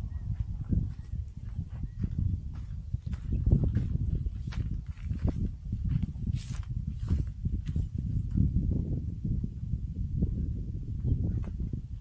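Footsteps crunching and swishing through tall dry grass, irregular crackles over a constant low rumble of wind on the microphone.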